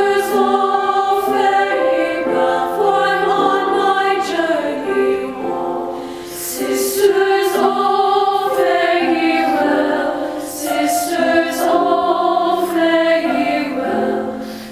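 A choir singing in several voice parts, holding chords, with short breaks between phrases about six seconds in and again near ten seconds.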